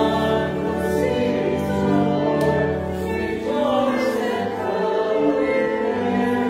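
Choral music: a choir singing slow, held chords, with the notes changing every second or two.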